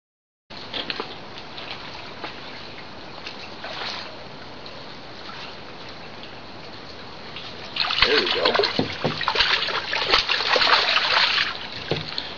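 A hooked rock bass splashing and thrashing at the water's surface beside the dock as it is reeled in: after several seconds of steady background hiss, about four seconds of loud splashing before the fish is lifted out.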